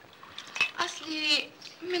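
Cutlery clinking against plates and dishes at a dinner table, a few sharp clicks, with a short voice sound in the middle and a woman beginning to speak at the end.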